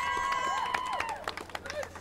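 Bystanders cheering with a long, held "woo" for about a second, followed by scattered handclaps, just after an accordion song ends.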